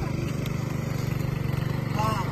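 A small engine running steadily at a constant speed, with a regular throb.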